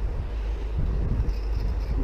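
Wind buffeting the microphone: a steady low rumble with a hiss over it.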